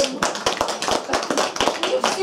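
A small group applauding: many hands clapping at once in a dense, steady patter.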